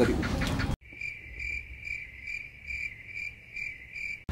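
Cricket chirping sound effect: a high chirp repeating steadily about twice a second, cut in suddenly about a second in and cut off just as sharply at the end, the comic 'awkward silence' cue.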